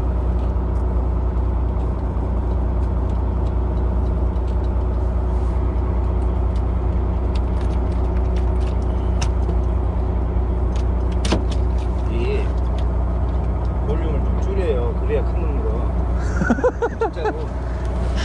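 Boat engine running with a steady low hum and droning tones. Scattered light clicks and knocks sound over it, and short calls or voices come near the end.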